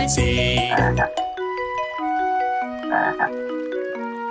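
Cartoon frog croaking over the song's music in the first second, then a short tune of single stepping notes on a xylophone-like mallet instrument, with another brief croak-like burst about three seconds in.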